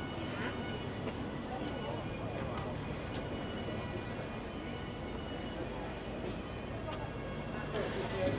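Busy outdoor street ambience: indistinct chatter of passers-by over a steady low rumble, with a few faint clicks.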